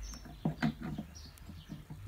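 A few faint, short high-pitched chirps, like a small bird, over quiet handling noise from a steel ruler being held across an archtop guitar.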